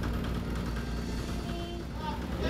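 A fishing boat's engine running steadily as the boat motors through the harbour: a low, even hum.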